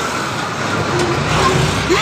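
A tractor's engine running as it drives past pulling a trailer, a steady low rumble with road noise.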